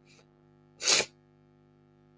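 A man sneezing once, a short sharp burst of breath noise about a second in; he is unwell.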